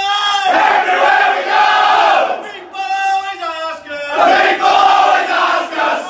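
A group of men chanting a call-and-response club chant: a held line from a few voices, then the whole group shouting back, twice over.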